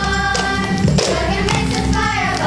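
A group of girls singing a song with backing music, with rhythmic taps and claps on the beat.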